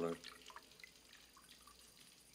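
Water dripping in a few faint, scattered drops from wet hands and a head just doused with water.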